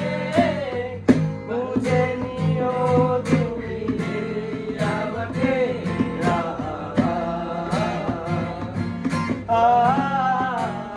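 A man singing a song while strumming an acoustic guitar, with regular chord strums under the voice.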